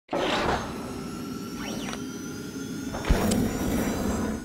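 Animated logo intro sting built from sound effects: a whoosh at the start, sweeping tones, then a deep hit about three seconds in.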